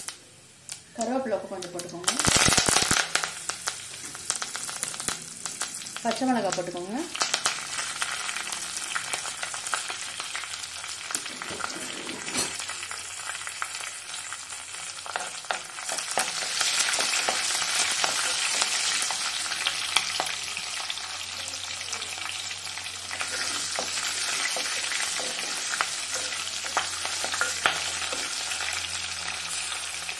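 Cumin seeds and bay leaves sizzling in hot mustard oil in a clay pot, with a loud burst of sizzling about two seconds in. From about halfway through the sizzling grows louder as green chillies fry and are stirred with a wooden spatula.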